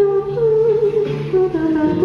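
A woman's voice humming a wordless melody over acoustic guitar in a live solo performance.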